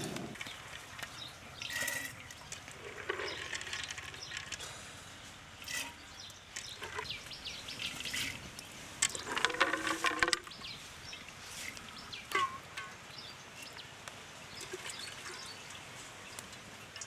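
Dried maize kernels rattling as they are handled and dropped into a clay pot, with water poured in from a steel bucket. A loud animal call lasting about a second comes about nine seconds in.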